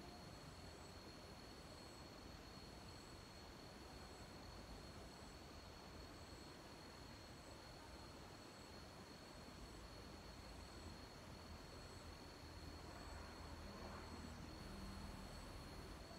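Near silence: faint background hiss with a steady, thin high-pitched tone.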